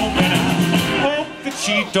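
Live roots-rock band playing: a man sings with vibrato over electric and acoustic guitars and a steady low bass line, which drops back about a second in.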